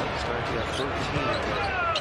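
Arena crowd noise during live basketball play, with a basketball bouncing on the hardwood court. A brief high squeak near the end is the kind that sneakers make on the floor.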